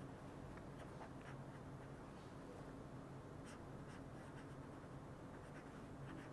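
Faint scratching of a pen or marker writing, a few light scrapes and taps at irregular moments, over a low steady hum.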